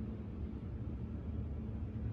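Steady low hum from the switched-on servo motor of an industrial sewing machine, powered but not driving the machine.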